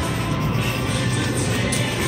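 Casino slot floor din: electronic slot machine music and jingles.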